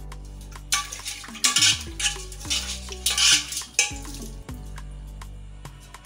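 Dishes and utensils clattering and being scrubbed in a stainless-steel kitchen sink, in several noisy bursts with sharp clicks, over background music with a steady bass line.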